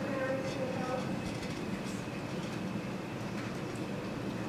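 Steady low background rumble of a large room's air and equipment noise, with a faint voice trailing off in the first second.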